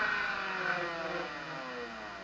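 Muller magnet motor running with a whine that falls steadily in pitch and fades as the rotor brakes heavily. The coil-driver pulses have just been inverted, so the drive timing is all wrong and now works against the rotation.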